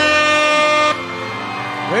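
A loud air-horn sound effect: one blast whose pitch drops at its onset and then holds steady, cutting off about a second in. Quieter music carries on underneath afterwards.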